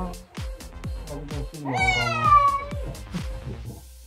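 A domestic cat meows once, about two seconds in: a call about a second long that falls in pitch. It sits over background music with a quick, steady beat.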